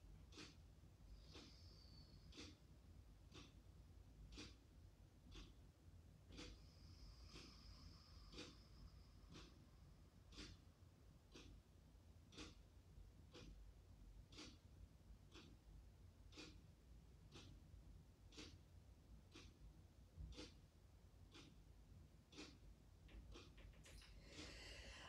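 A wall clock ticking faintly and evenly, about once a second, in a quiet room.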